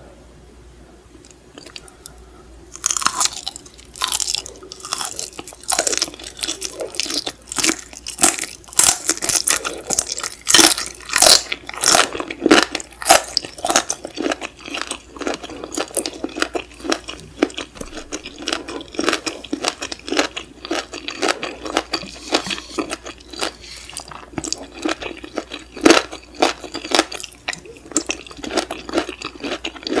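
Close-miked chewing of stir-fried shrimp and vegetables. Quiet for about the first three seconds, then a long run of crunchy bites and chewing, several a second.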